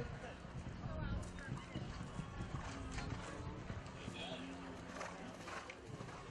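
Hoofbeats of a horse landing from a fence and cantering on on the soft dirt footing of a show-jumping arena.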